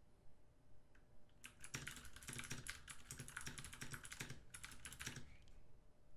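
Typing on a computer keyboard: a fast, faint run of key clicks that starts about a second and a half in and stops about a second before the end.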